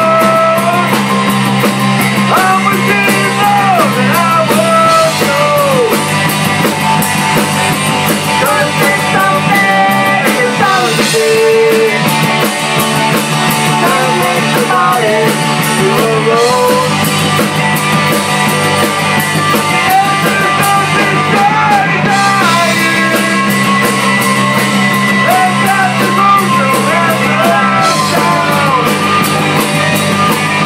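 Live band playing a country song on electric guitars, bass guitar and drums through stage amplifiers, loud and continuous, the bass notes changing every few seconds.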